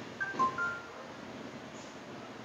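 Three quick electronic beeps at different pitches, high, low, then middle, the last a little longer, with a brief knock among them.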